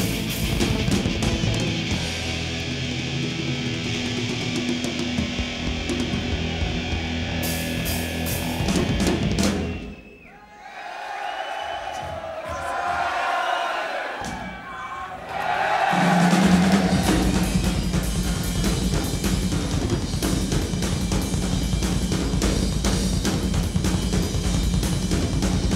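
Live heavy metal band playing loud, with pounding drums and distorted guitars. About ten seconds in the band drops out for a short, quieter break, then crashes back in with heavy drums about six seconds later.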